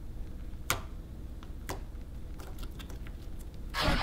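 Fingers pressing and poking a blob of glue slime, giving a few sharp clicks and pops about a second apart. Near the end a loud whooshing splash sound effect swells up.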